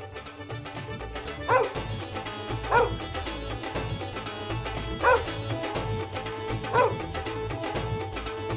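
A dog barks four times, short sharp barks a second or two apart, over background music.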